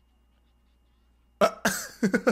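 Near silence with a faint hum, then about a second and a half in a man suddenly bursts out laughing: a sharp cough-like huff followed by breathy, rapid laughs.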